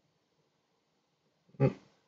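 Near silence, then a brief murmur from a man's voice near the end ("no, mm").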